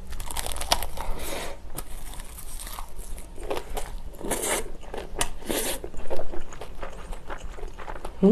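Close-miked biting and chewing of a mouthful of rice wrapped in unroasted dried laver (gim). The sheet crackles and crunches as it is chewed, in quick small clicks, with louder bursts a little past the middle.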